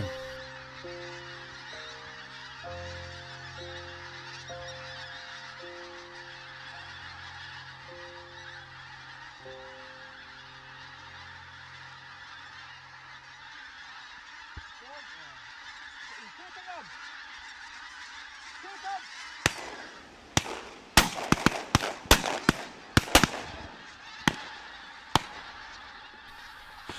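A large skein of geese calling as it flies in, under soft background music with long held notes for the first half. About three-quarters of the way in, a quick run of shotgun shots, roughly a dozen over six seconds, as the birds come over the guns.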